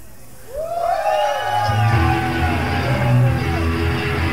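Live punk rock: the band breaks off for a moment, then a long shouted vocal note bends up and down, and the bass and drums come back in about a second and a half in.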